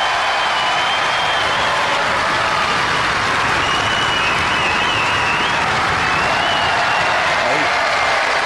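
Studio audience applauding and cheering steadily, with whistling held over the clapping twice, early and again midway.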